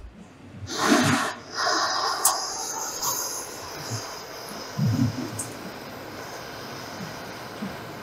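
Handheld gas torch on a disposable fuel cylinder: a sharp click, then a loud rush of hissing gas about a second in that settles into a steady, fainter hiss.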